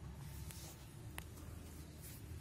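Quiet room with a low steady hum and faint rustling from the phone being moved in the hand, plus a light click a little past the middle.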